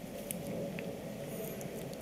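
Faint room noise with a few light ticks.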